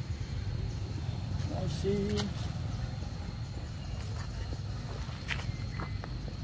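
Footsteps of a person walking on grass over a steady low rumble, with a few light clicks. A brief voice sound comes about two seconds in.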